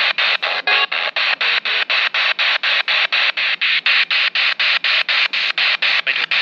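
Handheld spirit box radio sweeping rapidly through the FM band: hissing static chopped into about five short bursts a second, with brief snatches of radio sound caught between stations near the start.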